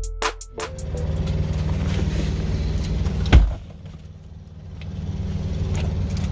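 Electronic beat music cutting off within the first second, then a car engine idling, heard as a steady low rumble from inside the cabin. A single loud thump about three seconds in, after which the rumble drops back briefly and swells again.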